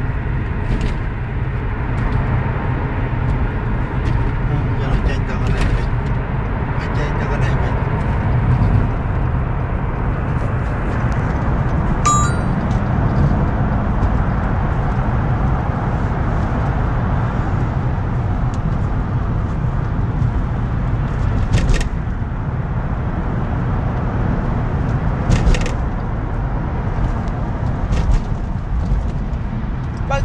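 Steady low road and engine rumble inside a moving car's cabin, with a few brief clicks and a short high tone about twelve seconds in.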